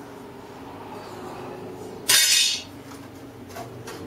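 A short hiss about half a second long, a little past halfway through, over a faint steady low hum.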